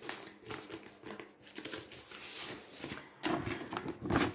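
Plastic packaging and card of a cross-stitch kit rustling and crinkling as it is handled and the printed picture is slid out, a string of small crackles and scrapes that grows louder near the end.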